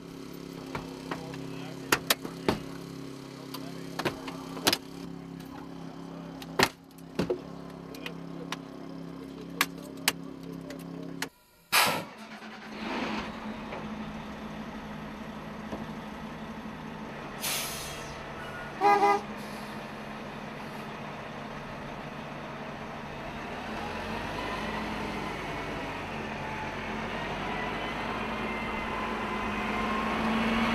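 Hydraulic rescue tool working on a car door: its power unit hums steadily under many sharp cracks and pops as the door gives way. After a cut, a heavy fire truck's engine runs and grows louder near the end, with a short run of beeps partway through.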